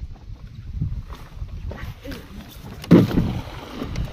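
A cast net thrown from the bow of a boat lands on the water with one loud splash about three seconds in, over a low rumble of wind on the microphone.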